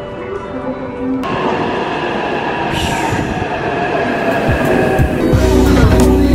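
Taipei Metro train pulling into the platform, growing steadily louder, with high squealing tones from the wheels. A deep rumble sets in near the end as the train draws alongside.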